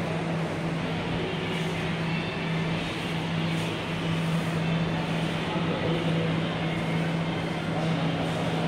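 Steady indoor background noise: a constant low hum under an indistinct murmur of voices.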